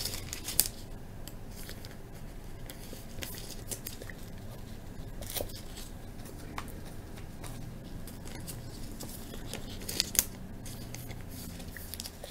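Trading cards being slid into plastic sleeves and handled by gloved hands: soft scattered rustles and light clicks over a faint steady room hum.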